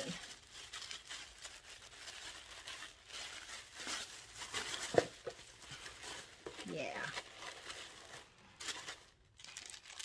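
Packaging being unwrapped by hand: crinkling and tearing rustles, with one sharp click about five seconds in.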